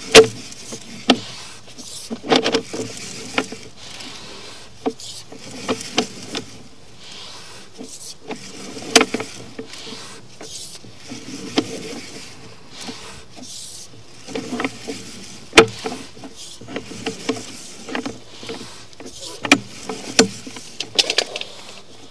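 Sewer inspection camera being pushed down a drain pipe: irregular clicks, knocks and scrapes as the push cable is fed and the camera head bumps along the pipe.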